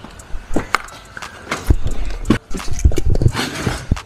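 A person getting into a car's driver seat: scattered knocks and clicks against the door and seat, with paper laid on the floor rustling underfoot near the end.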